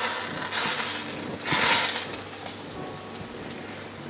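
Whole sage leaves dropped into hot sunflower oil about a centimetre deep in a small pan, sizzling. The oil flares up in two louder bursts of sizzle about a second apart, then settles to a quieter fizz as the leaves fry.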